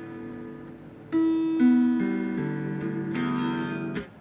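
Strings of a Squier Bullet Stratocaster being plucked. Several notes ring on and overlap, with a fresh pluck about a second in and a few more after it.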